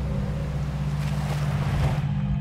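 A rushing, watery whoosh sound effect swells over a low, sustained music drone and cuts off abruptly near the end.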